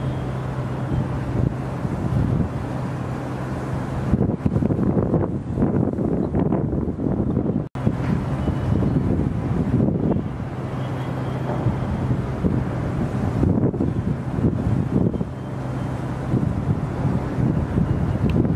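Wind buffeting the microphone in gusts, over a steady low hum. The sound drops out for an instant about eight seconds in.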